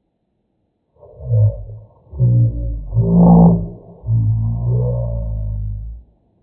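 A man's voice slowed down to a deep, drawn-out drone, in four long stretches starting about a second in, the middle one loudest.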